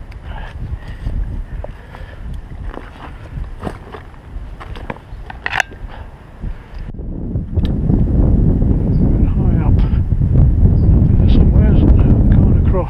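Wind buffeting the microphone, a low rumble that gets much louder about seven and a half seconds in, over scattered small knocks and rustles of handling in the undergrowth during the first half.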